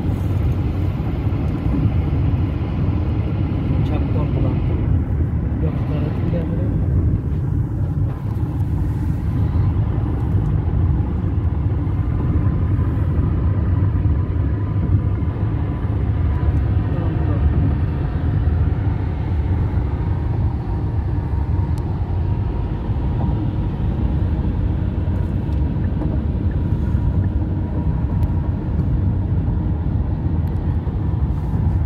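Steady low rumble of road and engine noise inside a car cruising at highway speed.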